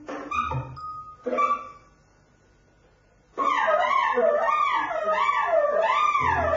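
Improvised tenor saxophone with live electronics: a few short clipped notes, a pause of about a second and a half, then a loud wavering tone that slides up and down over and over.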